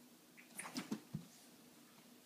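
A crawling baby's hands knocking against the wall and the hardwood floor: a few faint, quick knocks between about half a second and a second in, the last one a dull thump.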